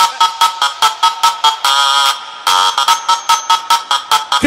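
Electronic dance music from a funkot DJ mix: a buzzy, horn-like chord chopped into rapid stabs, several a second, with a short break about halfway through before the stabs start again.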